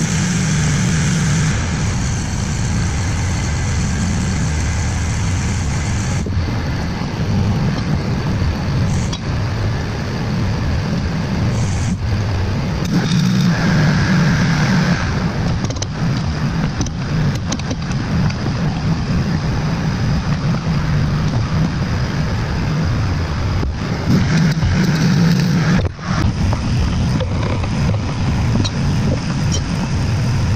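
An engine running steadily at idle, with a few sharp metallic knocks from slag being chipped off fresh welds on a steel bracket.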